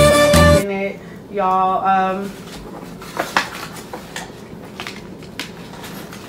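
A song with a sung line stops abruptly just after the start, followed by a short vocal phrase. After that come soft rustling and a few light clicks of plastic and fabric packaging being handled as a handbag is unwrapped.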